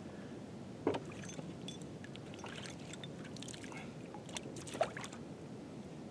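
Faint sloshing of shallow water around a person wading among floating decoys, with a few brief knocks about a second in and twice near the five-second mark.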